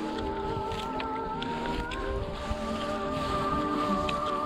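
Instrumental intro of a rap track played back through a speaker outdoors, with held, slowly shifting melodic chords. Wind rumble sits on the microphone underneath.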